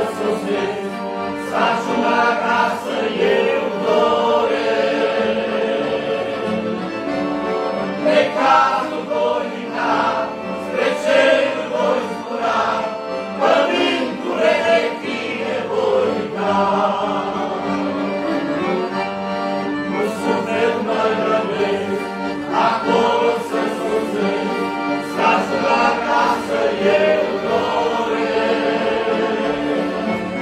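A men's choir singing a hymn in unison, led by a singer at a microphone, over sustained accordion chords.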